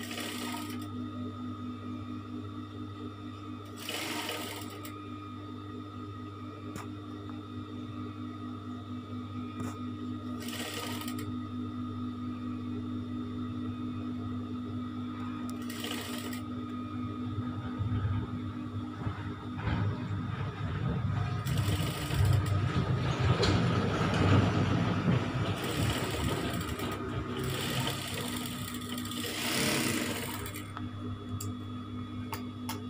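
Industrial flatbed sewing machine running, with a steady hum throughout. Through the second half come louder runs of rapid stitching as fabric is fed under the needle.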